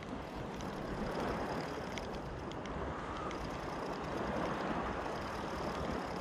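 Steady wind and shallow-water noise on the microphone, with a few faint ticks from a spinning reel being wound in.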